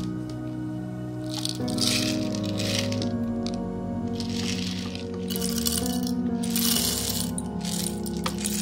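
Background music, with whole coffee beans rattling as they are poured from a plastic jar into a stainless steel grinder bowl in two bursts, about two seconds in and again from about five to seven seconds.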